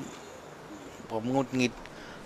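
A man says a few words in Thai about a second in, over a faint, steady, high-pitched insect drone.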